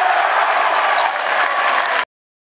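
Stadium crowd cheering and applauding a goal. The sound cuts off suddenly at the end.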